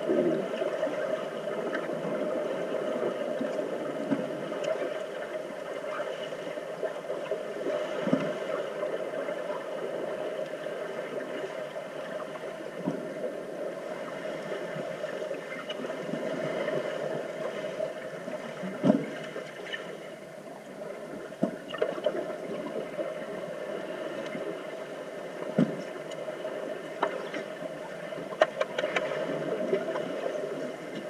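Underwater swimming-pool sound picked up by a submerged camera: a steady muffled rush of water, with scattered knocks and thuds from players struggling at the bottom. The two loudest come about a third of the way in and about two thirds in, and several more follow toward the end.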